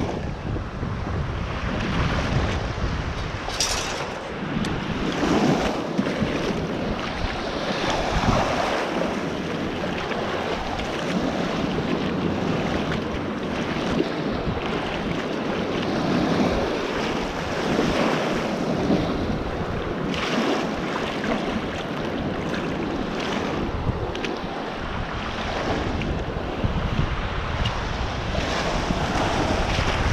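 Small waves washing in and out over the sand in shallow water, the wash swelling and easing every few seconds, with wind buffeting the microphone.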